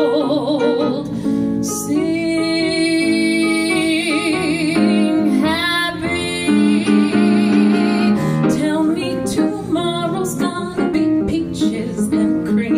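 A woman belting an uptempo show tune, with wide vibrato on her held notes, accompanied by a grand piano.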